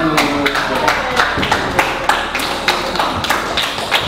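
A small group clapping together in a steady rhythm, about three to four claps a second, over quiet background music.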